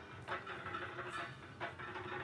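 Faint background room noise with a low steady hum and a few soft clicks, in a pause between spoken lines.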